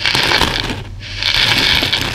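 Buttons, sequins and plastic beads poured from a clear plastic tub onto a heap of the same in a cloth-lined plastic bowl: a dense, rattling clatter of many small pieces. It comes in two pours, with a brief lull a little before a second in.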